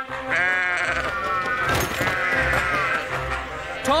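Sheep bleating over cartoon background music.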